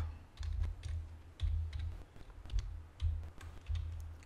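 Computer keyboard typing: a run of short, light key clicks as the name "lightbulb" is typed in, with a low hum coming and going underneath.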